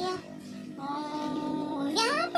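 A child's singing voice with music, holding one long note from a little under a second in until near the end.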